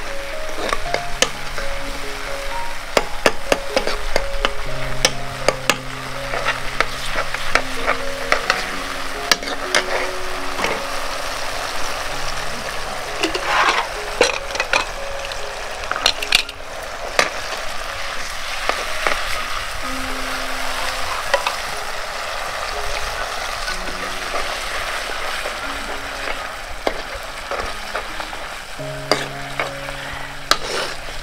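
A yellow liquid sizzling in a black metal wok over a burner, while a metal ladle stirs and scrapes it. The ladle gives frequent sharp clicks against the pan over the steady sizzle.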